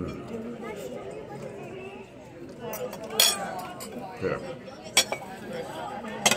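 Restaurant dining-room background: a murmur of other diners' voices with dishes and cutlery clinking, and a few sharp clinks, the loudest about three seconds in and another about five seconds in.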